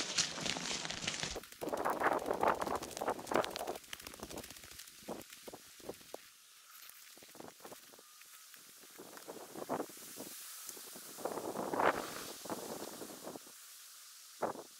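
Footsteps and rustling through dry pine needles, twigs and low brush, coming in irregular bursts with scattered crisp snaps and quieter gaps between them; the loudest stretches are near the start and again near the end.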